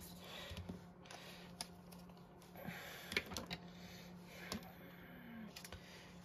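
Faint scattered taps and light clicks of a small folded paper box being pressed closed and handled on a craft mat, over a low steady hum.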